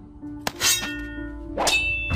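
Two metallic sword-clash clangs about a second apart, each ringing on briefly, over background music.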